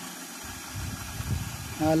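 Flushing-rig pump motor running steadily, recirculating chemically treated water through a chilled-water pipeline.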